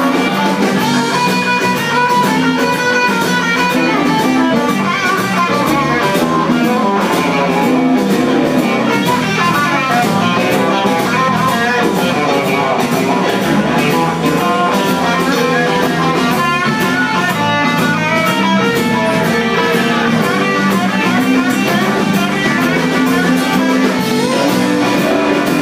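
Live blues band playing an instrumental stretch of a shuffle: electric guitars over drums, bass and keyboard, loud and without a break.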